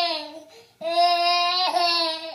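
A baby vocalizing in two long, steady, high-pitched calls, each held on one note; the first ends about half a second in and the second begins just under a second in.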